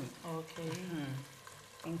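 Stew sizzling in a pot on the stove while it is stirred with a wooden spoon, a faint frying hiss under a woman's voice.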